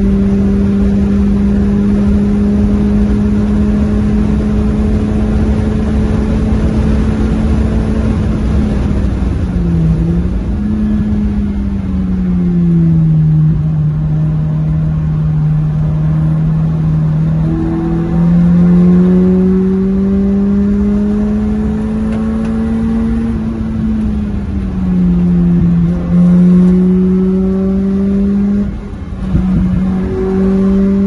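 Car engine heard from inside the cabin at track speed, over steady wind and road noise. It holds high revs along the straight for about eight seconds, drops as the car slows into a corner, then climbs through the revs again with several rises and falls in the second half.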